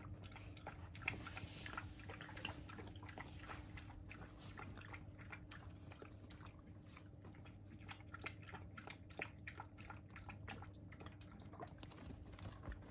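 A puppy eating from a small bowl hooked onto the crate wire: faint, irregular chewing and biting with many small clicks.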